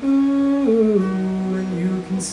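A male voice singing held, wordless notes that step down in pitch, three notes across the two seconds, over an acoustic guitar.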